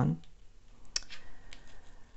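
A few light clicks of cards being handled and touched with fingernails, the sharpest about a second in.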